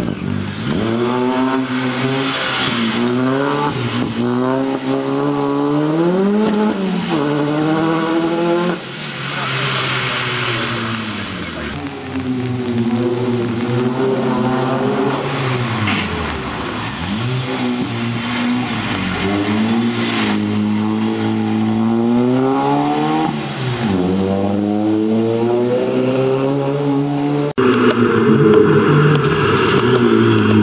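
Citroen C2 rally car's four-cylinder engine driven hard, its pitch climbing as it revs out and dropping back again and again through gear changes and lifts. About two and a half seconds before the end the sound breaks off abruptly and a steadier, louder engine note takes over.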